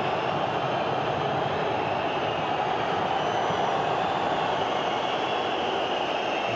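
Steady crowd noise of a football stadium, a dense even din of fans.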